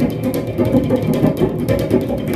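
Percussion played by hand on the body of an acoustic-electric guitar laid flat: quick, dense taps and slaps with the strings ringing underneath.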